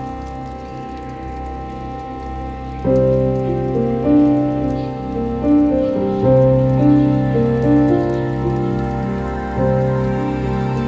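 Slow, calm ambient music of long held notes. It swells louder about three seconds in, as a slow melody of sustained notes enters over a low drone. A faint rain-like patter runs beneath it.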